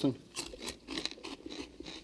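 Someone biting into and chewing a crunchy snack: a run of short, irregular crunches, several a second, starting a moment in.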